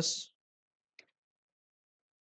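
A single faint click about a second in, otherwise quiet; a spoken word trails off at the very start.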